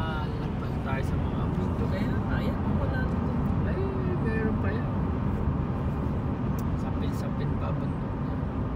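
Steady road and engine noise inside a moving car's cabin at highway speed, with faint voices in the first half.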